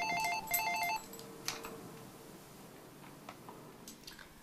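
Cordless home phone handset ringing with an electronic ringtone: two short trills of alternating tones in the first second. A few faint clicks follow.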